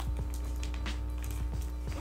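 Hands handling a tape-wrapped cardboard parcel, making light scattered rustles and crinkles of the plastic tape, over a steady low electrical hum in the recording.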